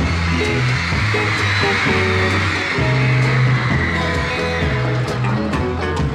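Live band music of a slow ballad with no singing: an electric guitar plays the melody of the instrumental break over a bass guitar line and soft drums.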